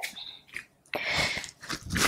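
A short, breathy exhale about a second in, with faint movement noise around it, as a woman sets up and begins jump squats.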